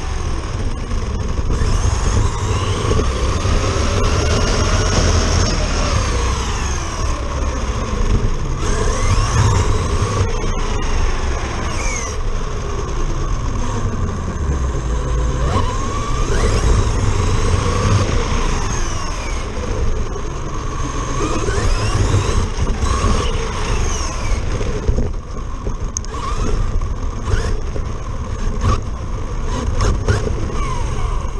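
Traxxas Slash RC truck running on 4S power, heard from on board: the motor and gear whine rises and falls in pitch again and again with the throttle, over a steady low rumble of tyres and wind on the microphone.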